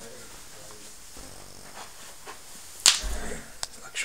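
A single loud, sharp smack about three seconds in, followed by a brief low rumble and a couple of lighter clicks near the end, over quiet room noise.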